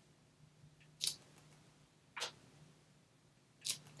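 Three brief, soft scuffs and taps from a clear acrylic stamp block and hands on paper as a small grass stamp is pressed along a card's edge.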